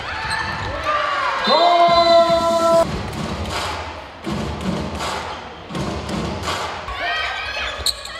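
Handball arena sound: a long held shout over the crowd in the first few seconds, then a series of dull thumps about every half second, with shouting voices again near the end.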